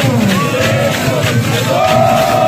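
Bumba-meu-boi group performing: several men's voices sing and call out in long, sliding notes over a steady, fast percussion beat, with a dense crowd around them.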